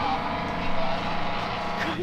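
A car engine running steadily at an even speed, with voices over it.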